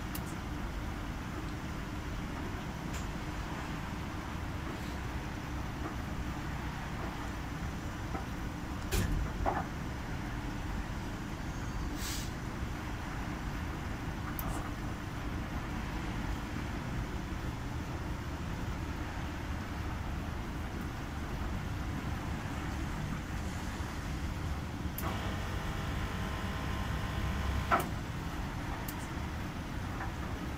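Kis Wash commercial front-loading washing machine tumbling a load of bedding during a 60°C colour wash: a steady low rumble from the turning drum, with a few short knocks. A higher hum joins in for a few seconds near the end.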